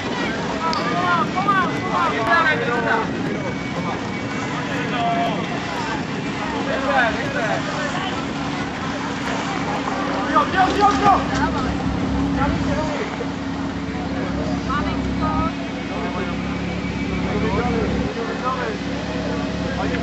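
Portable fire pump engine running steadily, with people shouting and cheering over it, the loudest shouts about ten seconds in.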